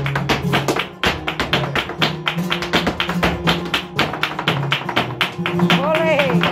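Fast, sharp flamenco footwork strikes (zapateado) over a flamenco guitar playing low, steady notes. A voice calls out near the end.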